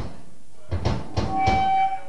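Live club room between songs: faint low stage and crowd noise with a few dull knocks, then a single steady high tone held for about half a second near the end.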